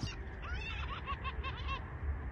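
Gulls calling over water: a quick run of short, repeated cries, several a second, over a low steady rumble.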